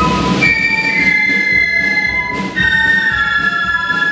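Flute band playing a melody: many flutes sound held high notes together, moving between notes every second or so, with drums beating underneath.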